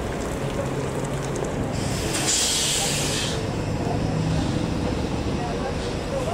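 An articulated trolleybus pulls away through a busy bus and trolleybus terminus with a steady low hum of running vehicles. About two seconds in, a loud burst of compressed-air hiss lasts about a second and a half, typical of a bus's pneumatic brake or door air release.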